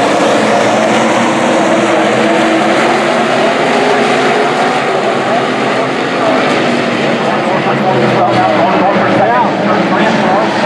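A pack of USRA Stock Cars racing on a dirt oval, their V8 engines running together in a loud, steady drone. Several engine notes bend up and down as the cars go through the turn and onto the straight.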